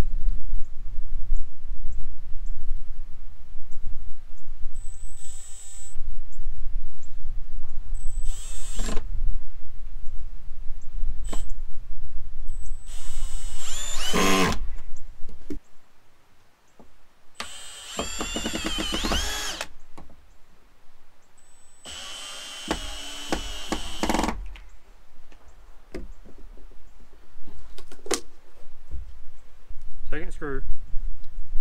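Cordless drill driving screws through cedar picket boards into a locust post, in four separate runs of one to two seconds, the motor whine wavering in pitch as each screw drives in.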